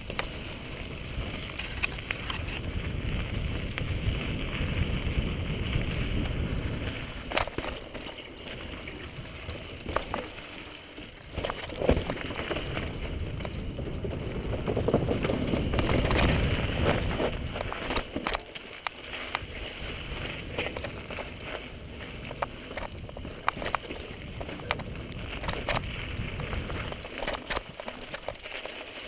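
Mountain bike riding fast downhill on a dirt trail, heard from a camera on the bike or rider: tyres rolling over dirt and rock with wind rushing over the microphone, swelling and fading with speed. Sharp knocks and rattles come now and then as the bike hits bumps.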